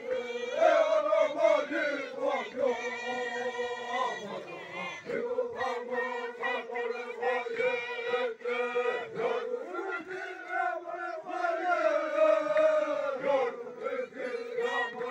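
A group of Kayapó men chanting together, many voices holding the same notes in unison, with short breaks about five and nine seconds in.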